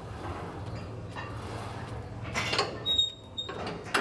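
Cybex plate-loaded hack squat machine's carriage sliding on its rails with creaks, two short bursts of movement noise in the second half and a brief high squeak between them, over a steady low hum.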